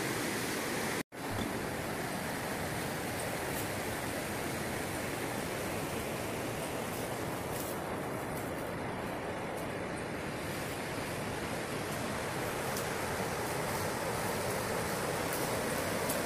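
Steady rushing of a shallow river running over rocks and rapids. The sound drops out for an instant about a second in.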